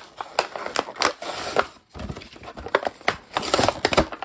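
Plastic blister bubble being pried and torn off an action figure's cardboard backing card: irregular crinkling and tearing with many sharp snaps.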